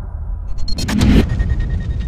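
Cinematic intro sound effects under an animated logo. A deep rumble runs underneath. About a second in comes a sharp, noisy hit, and after it a brief high ringing tone and fading crackles.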